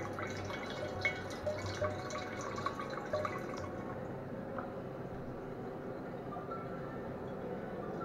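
Moonshine distillate falling in a thin, fast stream from the still's output tube into a glass bottle, trickling and plinking into the pooled liquid. The small plinks are most frequent in the first half, after which the trickle sounds steadier.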